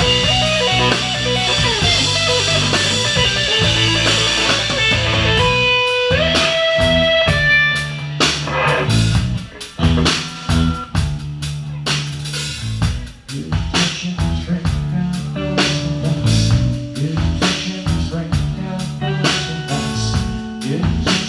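Live rock band playing an instrumental passage: electric guitar, bass guitar and drum kit, loud. About six seconds in, a few held guitar notes ring out, then the drums hit in a choppy stop-start pattern with brief gaps before the full band comes back in.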